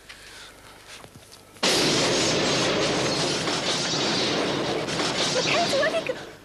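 Explosion sound effect for a detonating grenade: after a short hush, a sudden loud blast that goes on as a dense crashing rush for about four seconds before dropping away near the end.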